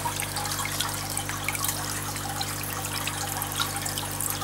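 Water trickling and splashing steadily in an aquarium's filtration or sump circulation, over a steady low hum.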